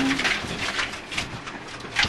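Rally car cabin noise: an even rumble of road and tyre noise with a few faint rattles and clicks, the engine barely heard. A steady engine note cuts off just at the start.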